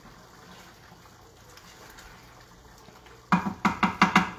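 Pan of curry sauce simmering faintly on the stove, a soft steady bubbling. Near the end a quick run of sharp knocks as the wooden spoon strikes the pan several times.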